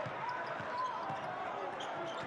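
Basketball being dribbled on a hardwood court, with a couple of short sneaker squeaks about half a second in.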